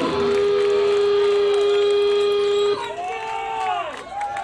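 Live rock band's electric guitar holding one long steady note that cuts off suddenly a little under three seconds in, followed by short rising-and-falling shouts and whoops from the crowd.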